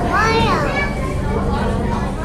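Children's voices in a crowd, one child calling out loudly in a high voice that rises and falls in the first second, over a steady low hum.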